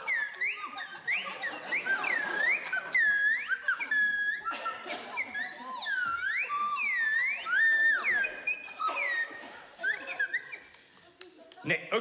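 A slide whistle played solo, in a string of swooping glides arching up and down, thinning out and breaking off near the end. The player himself says he did not play it well.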